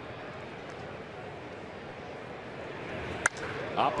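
Steady ballpark crowd murmur, then about three seconds in a single sharp crack of a wooden bat driving the pitch into a line drive, with the crowd noise rising after it.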